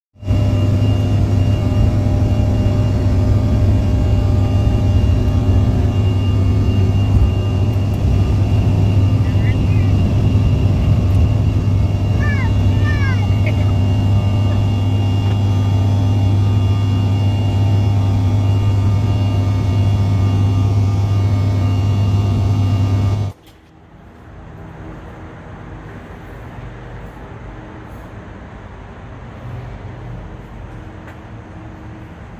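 Airliner engines at takeoff power heard from inside the cabin: a loud, steady drone with a deep hum during the takeoff roll and climb. About 23 seconds in it cuts off abruptly to a much quieter steady background hum.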